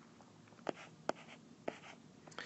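Faint handwriting sounds of a stylus on a tablet screen: a few light taps and short scratchy strokes as a small mark is drawn.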